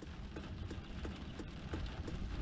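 Quiet car-cabin background: a low rumble with a scatter of faint, light ticks at irregular intervals.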